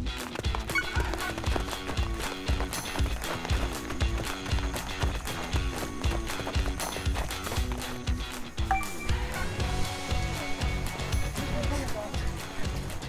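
Background music with a steady beat, mixed with the quick, even patter of many runners' footsteps on asphalt.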